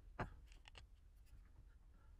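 Near silence with one short click and a few fainter ticks soon after.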